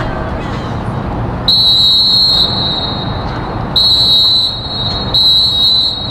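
A shrill whistle blown in three long, steady blasts, each under a second and a little apart, over a constant low background murmur.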